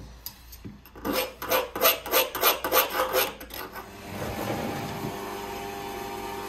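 Rat-tail file rasping back and forth on metal, in quick even strokes of about three a second, for roughly two and a half seconds. A steady hum follows.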